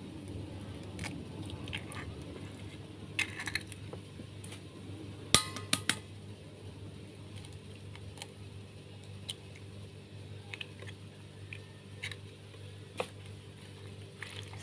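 Eggs being cracked against a bowl and added to the seblak mixture: scattered knocks and clinks on the bowl, the loudest about five seconds in with a brief ring, over a low steady hum.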